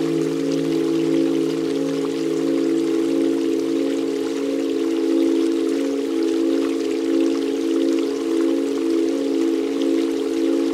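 Meditation music: a sustained drone chord of held mid-low tones that swells gently, layered with running, trickling water and drops. The lowest tone of the chord fades out about four seconds in.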